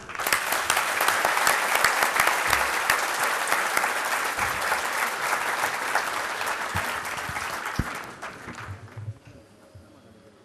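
A large seated audience applauding a speaker who has just finished, dense clapping that holds steady for several seconds, then thins and dies away about nine seconds in.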